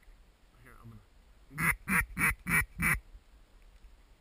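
Mallard-style duck call blown in a quick series of five loud quacks, each dropping in pitch, about three to the second. A fainter call comes just before it.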